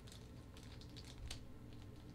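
Faint small clicks and ticks of a small screwdriver turning a tiny screw into a clear plastic joint of an action figure stand, over a low steady hum.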